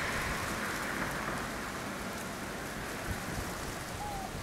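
Steady, even hiss of outdoor background noise, easing slightly in level, with a faint tick about three seconds in.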